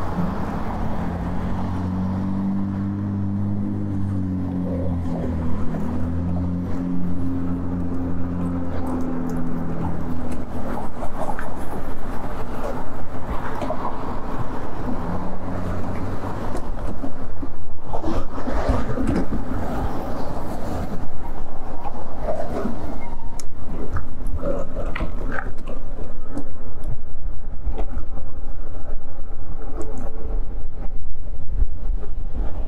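Road traffic passing alongside a moving e-bike, with a low engine hum for the first ten seconds or so. Wind noise on the microphone and rolling noise grow louder toward the end as the bike picks up speed.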